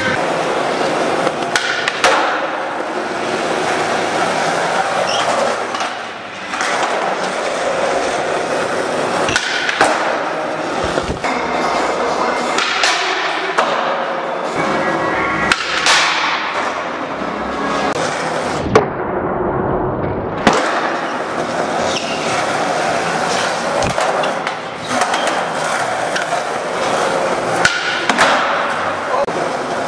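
Skateboard wheels rolling on a smooth concrete floor, broken by sharp tail pops and board-landing clacks several times over.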